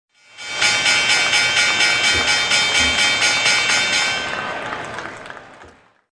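Channel logo intro sting: a sustained synthesized chord with a quick, even pulsing shimmer, swelling in about half a second in and fading away over the last two seconds.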